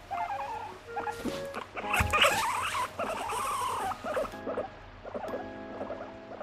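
Abyssinian-mix guinea pig vocalising with wavering squeals while being stroked, loudest from about two seconds in. The sounds are the annoyed protest of an angry guinea pig.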